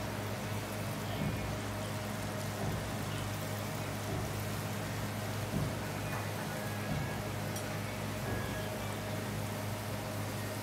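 Tal palm fruit batter fritters sizzling in deep hot oil in an iron wok, a steady crackling fizz with a low hum underneath.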